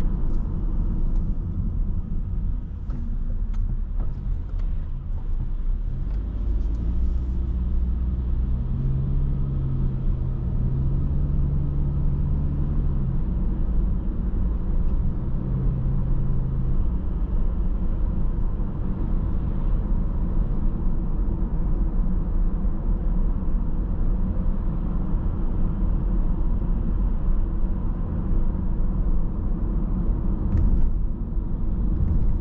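Steady low rumble of a car driving along a road, engine and tyre noise heard from inside the car. A low hum rises out of the rumble for a few seconds about a third of the way in and briefly again a little later.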